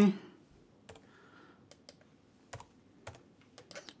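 Faint, scattered clicks of computer keyboard keystrokes and a mouse, about a dozen over a few seconds, as a short number is typed into a form field.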